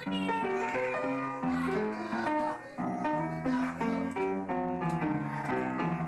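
Upright piano played solo with both hands: a lively run of chords and melody notes.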